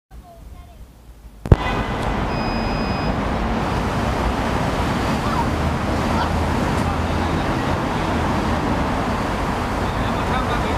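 F450 quadcopter's four electric motors and propellers starting about one and a half seconds in, just after a sharp click, then running with a steady noisy whir as it lifts off and hovers. A brief high tone sounds shortly after the start.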